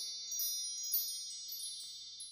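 A shimmering wind-chime sparkle: several bright, high notes enter in quick succession at the start, then ring on and slowly fade away.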